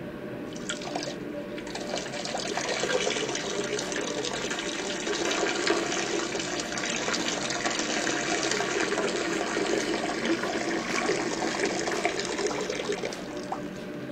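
A person urinating into a wall urinal: a steady splashing stream of liquid that starts about two seconds in and stops shortly before the end.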